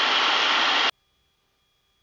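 Steady noise of a Piper Super Cub's engine, propeller and airflow in cruise, heard in the cockpit. It cuts off suddenly about a second in, leaving near silence.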